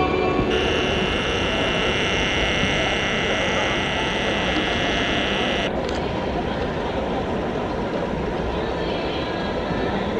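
Steady rushing outdoor ambience in an open-air stadium. A thin, high-pitched steady whine lies over it from about half a second in and cuts off suddenly about six seconds in.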